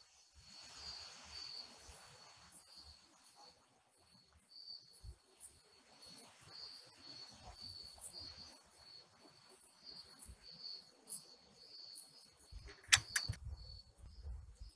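Faint, steady chirping of night insects, a high-pitched trill pulsing on and off, with soft low thumps scattered through. A couple of sharp clicks come about a second before the end.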